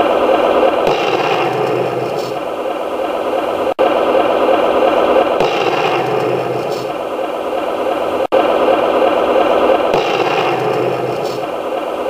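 A loud, rough, noisy sound effect playing as a loop: the same stretch repeats about every four and a half seconds, with a brief cut each time it restarts.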